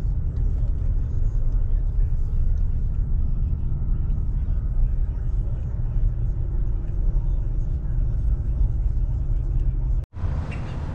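Steady low rumble of a vehicle's engine and road noise heard from inside the cabin while driving slowly in heavy traffic.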